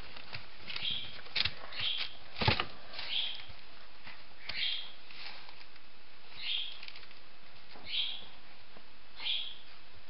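Weimaraner puppies squeaking: about seven short, high squeaks a second or so apart, with two sharp knocks in the first few seconds.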